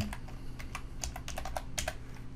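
Computer keyboard typing: a quick, irregular run of about a dozen keystrokes as CSS code is entered.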